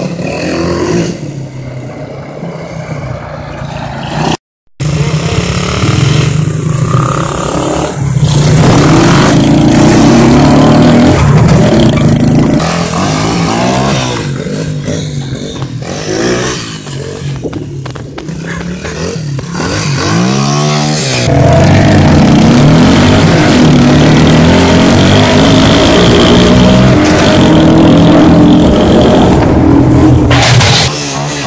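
Pitbike and quad bike engines running and revving, their pitch rising and falling again and again as they ride. The sound cuts out briefly about four and a half seconds in.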